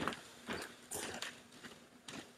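Footsteps close to the microphone: several uneven steps about half a second apart, with clothing rustle, getting fainter near the end.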